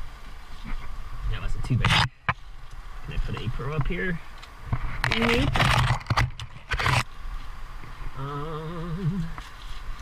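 Leaves and branches rustling and scraping against a helmet-mounted camera as a climber pushes through dense brush, loudest about two seconds in and from five to seven seconds. Between the rustles come the climber's wordless hums and grunts, with a long wavering hum near the end.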